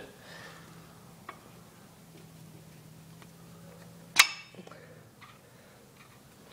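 A single sharp metallic clink with a short ring about four seconds in, with a few faint clicks around it. These are the steel cross pin and carrier of a Ford 8.8 Traction-Lok differential knocking together as the pin is worked into place by hand.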